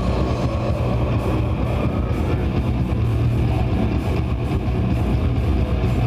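Old school death metal band playing live: heavily distorted electric guitars and bass over fast, dense drumming, loud and unbroken.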